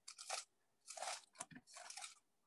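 Faint, short paper rustles: Bible pages being leafed through, four or five brief crackles in a row, as the verse is looked up.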